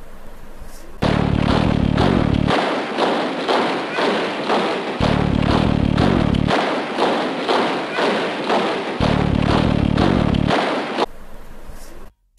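Massed marching boots stamping in unison in a steady rhythm of thumps, with a low bass tone that comes in three times. Static-like hiss opens and closes the stretch.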